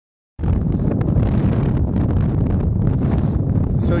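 Wind buffeting the microphone: a loud, low rumble that starts abruptly about half a second in and runs on unbroken.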